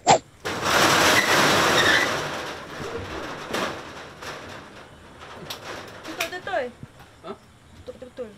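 A loud rushing whoosh, a sound effect laid over a whip-pan scene change. A short sharp sound comes right before it. It swells for about two seconds, then fades out over the next second or two.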